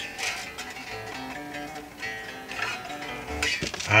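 Rickenbacker 4001 electric bass being plucked: a short run of single notes, one after another, each ringing briefly before the next.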